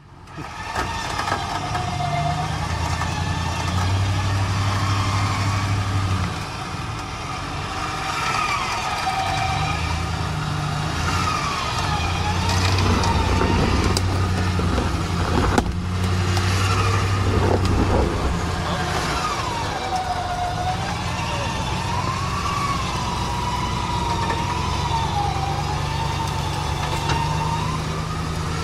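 Ram 1500's Hemi V8 engine working at low speed as the truck crawls over rocks, its revs rising and falling. A whine glides slowly up and down in pitch over the engine.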